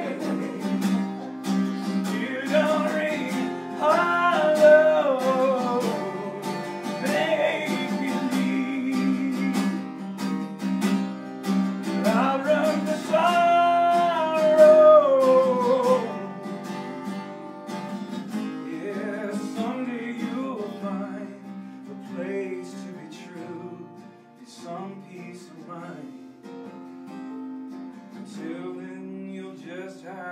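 A man singing to a strummed, capoed Takamine acoustic guitar in a live solo performance. Voice and strumming are loud for the first half and drop to a softer, quieter passage after about 16 seconds.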